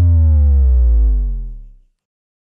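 A loud electronic power-down sound: a low buzzing tone that slides steadily down in pitch and fades out within about two seconds, ending in dead silence. It is taken as the studio's electricity cutting out.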